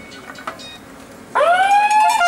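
A siren sounds about a second and a half in, its pitch rising quickly and then holding steady.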